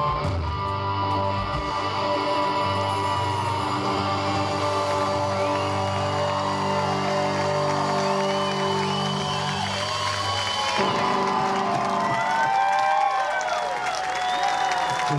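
A live rock band on electric guitars, bass and drums holds a final chord that rings on and cuts off about eleven seconds in. The audience whoops and cheers over the end of the chord and goes on cheering after it stops.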